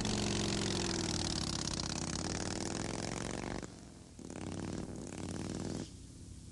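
Chopper motorcycle engine running and revving for about three and a half seconds, its pitch sliding a little. It drops away briefly, then runs again from just past four seconds until it stops near the end.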